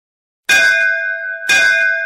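A bell struck twice, about a second apart, starting about half a second in. Each strike rings on with a steady, clear tone made of several pitches.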